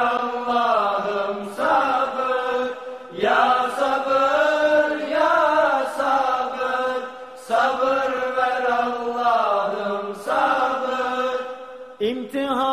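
Unaccompanied Turkish ilahi (Islamic hymn) sung by a solo voice in long, drawn-out melismatic phrases, with short breaths between phrases.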